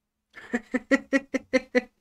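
A man laughing: a string of about seven short 'ha's, roughly five a second, starting about half a second in.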